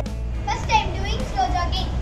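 High, children's voices over a steady low background music bed.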